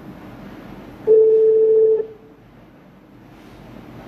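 A single telephone line tone: one steady beep about a second long, starting about a second in, over a faint line hiss.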